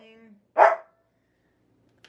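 A dog gives a single short bark about half a second in.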